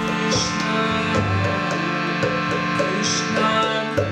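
Kirtan music: a harmonium holds a steady chord, with soft plucked string notes over it.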